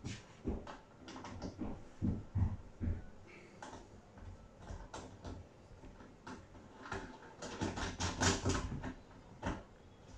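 Irregular plastic clicks, knocks and rattles as cable clips are worked onto the tubular handle of an artificial-grass vacuum-brush during assembly. A quick run of clicks comes about two seconds before the end.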